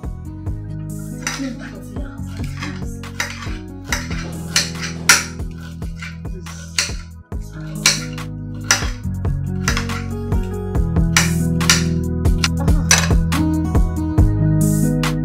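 Background music with held low notes, over uneven clinks and taps of a kitchen knife and dishes.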